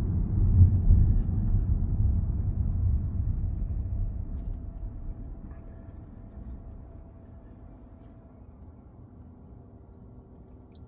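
Low rumble of a car being driven, heard from inside the cabin. It fades over the first half and settles to a quiet steady hum.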